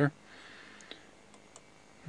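A few faint, sparse clicks of a computer mouse over quiet room tone.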